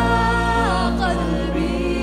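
Live Arabic worship song: a woman's voice holds a long sung note that steps down in pitch a little under a second in, over sustained low band accompaniment.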